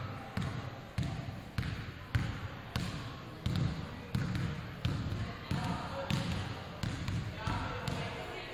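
A basketball dribbled steadily on a hardwood gym floor, a little under two bounces a second, each thump echoing briefly in the hall.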